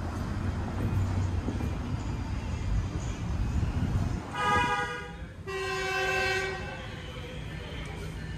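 A train horn sounds two blasts of about a second each, near the middle, over a low rumble.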